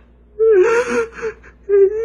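A woman crying: a long, breathy cry with a wavering pitch about half a second in, then a shorter whimper near the end.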